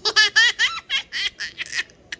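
A two-year-old girl laughing hard: a long run of quick, high-pitched laughs that trails off near the end.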